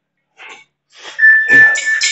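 Heavy guandao being swung. About a second in comes a sudden loud rush of noise, with a thin, steady, high metallic ring that lasts about a second.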